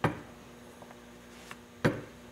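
Two sharp knocks, one right at the start and one near the end, over a faint steady hum.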